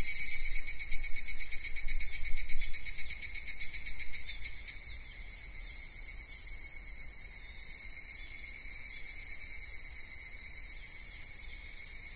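Insects chirring. A fast pulsing, louder trill for about the first four seconds settles into a quieter, even drone.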